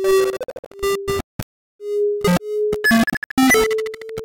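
Computer-generated synthesizer music in which each note is set off by a bouncing object striking a wall, so the notes come at irregular times. Held mid-pitched tones, brief bright buzzy stabs and sharp percussive clicks overlap in a disjointed jumble, with a brief gap a little before halfway.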